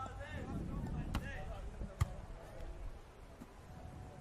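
Two sharp smacks of a beach volleyball against hands, about a second apart, the second louder, over faint background voices.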